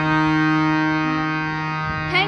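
Harmonium moving to a new chord and holding it as one steady sustained chord, fading slightly toward the end.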